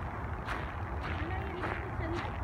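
Outdoor ambience: a steady low rumble, with a faint voice in the last second.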